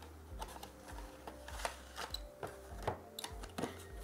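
Cardboard SSD box and its plastic drive tray being handled: a scattered series of light clicks, taps and scrapes of card and plastic.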